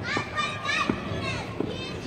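Children's high-pitched voices calling out and chattering, with a few short knocks.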